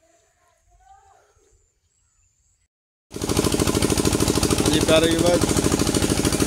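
Irrigation pump engine running with a steady, rapid chugging, cutting in suddenly about three seconds in after near silence with a few faint bird chirps.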